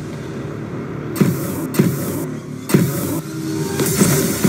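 Fight scene audio: a few sharp hits, about 1.2, 1.7 and 2.7 seconds in, over a low rumbling soundtrack with falling swoops.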